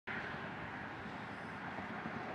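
Steady outdoor background noise, like distant road traffic, with no distinct events.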